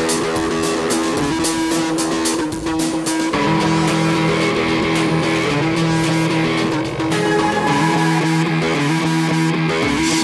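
Background instrumental music, its held chords changing about every three to four seconds.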